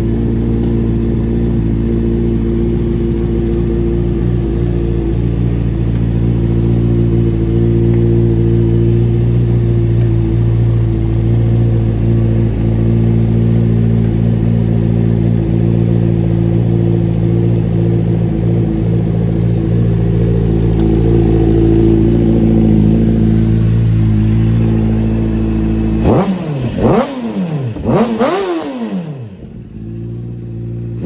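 2013 Honda CBR600RR's inline-four engine idling steadily, then revved with a few quick throttle blips near the end, the pitch sweeping sharply up and back down each time.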